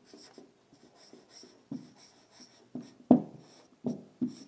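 Marker pen writing on a whiteboard: the felt tip squeaks faintly as it moves, with several short taps of the pen against the board in the second half.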